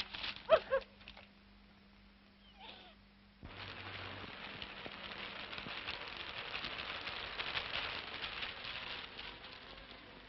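Two short, loud cries in the first second, then a near-quiet pause. About three and a half seconds in, rain comes in abruptly as a steady hiss full of fine crackle, easing slightly near the end.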